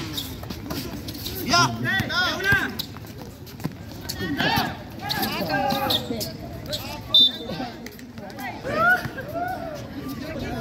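Basketball players and spectators calling out and shouting during play, with a basketball bouncing on the court. A brief high-pitched sound about seven seconds in is the loudest moment.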